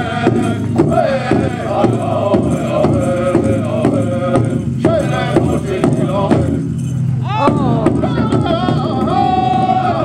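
Powwow drum group singing a contest song, men's voices in chant over a steady beat on the big drum, with a brief lull in the singing about seven seconds in.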